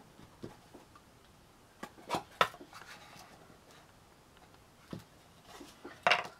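A few light taps and clicks of small cardboard pieces being handled and set against each other on a sheet of card, the sharpest about two and a half seconds in.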